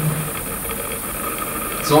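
A pause in a man's speech filled by steady room tone, with a short voiced sound at the very start and the word "so" near the end.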